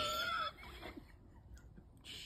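A short high-pitched squeal, falling in pitch, that stops about half a second in; after it, quiet room tone with a few faint clicks.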